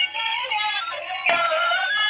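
Electronic toy music: a tinny synthesized melody with a sung voice, broken by a short click a little past halfway.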